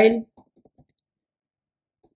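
A few faint computer keyboard keystrokes in the first second, right after a spoken word ends, then near silence.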